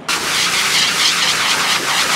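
Livestock grooming blower running steadily: a loud rush of air from the hose nozzle as it is worked over a Hereford's coat.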